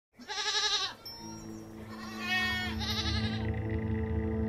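Three short, wavering bleats over a low, steady musical drone of held notes that comes in about a second in.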